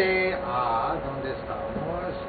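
A man's voice drawing out two long, held syllables in the first second, with a faint steady hum underneath.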